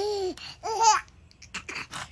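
Baby laughing: two high-pitched bursts of laughter in the first second, then a quieter stretch with short breaths.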